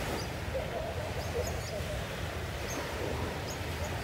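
Seaside ambience: a steady low rumble of wind and surf, with short, high bird chirps about once a second.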